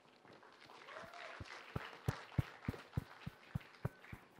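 Audience applauding, fairly faint, with individual claps standing out. It builds about half a second in and thins out toward the end.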